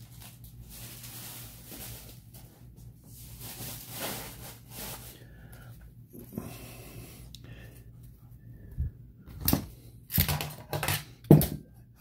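Cardboard trading cards from a freshly opened 1987 Donruss pack being handled and slid against each other by hand: soft rustling, then a few sharper clicks and snaps of card stock in the last few seconds.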